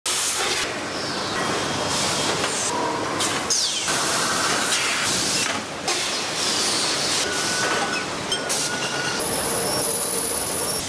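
Loud factory machinery noise with hiss and whirring. It changes abruptly every second or so as it jumps from machine to machine, with a thin high whine starting near the end.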